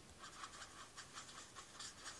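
Faint, quick scratching of a Stampin' Blends alcohol marker's felt nib rubbed back and forth on cardstock, several short strokes a second, blending light pink colours together.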